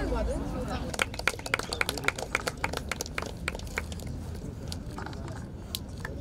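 Voices briefly at the start, then a run of sharp irregular clicks or taps, several a second for about three seconds, thinning out after that, over a low steady outdoor background.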